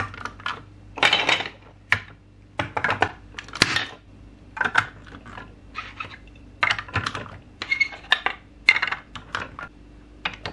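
Large plastic toy building bricks being handled and pressed together onto a plastic toy truck: irregular clicks and clacks of hard plastic on plastic, with a couple of longer rattling scrapes about a second in and near four seconds.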